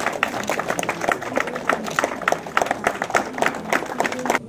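A crowd of students applauding: many hands clapping in a dense, steady patter.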